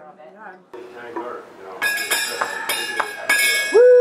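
Wooden-keyed Balinese xylophone struck with mallets in a quick, even run of notes, about three a second, each note ringing on, ending about half a second before the end.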